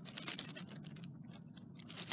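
Faint crackling and rustling of dry fallen leaves, a dense run of small crunches, as a plastic model horse is pushed through the leaf litter.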